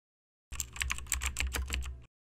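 Computer keyboard typing sound effect: a quick, even run of key clicks, about eight a second, starting about half a second in.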